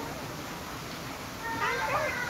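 A short, high-pitched vocal cry with a wavering pitch starts about a second and a half in, over a steady low hiss.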